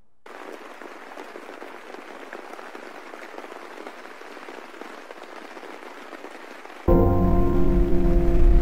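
Rain sound opening a lo-fi hip-hop beat: a thin, crackly rain hiss with no low end. About seven seconds in, the beat comes in much louder, with deep bass and held tones.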